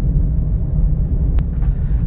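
Steady low rumble of a Suzuki Ertiga MPV driving at speed on a highway: engine and road noise, with a single faint click about a second and a half in.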